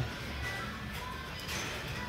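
Faint background music over the general room noise of a large store.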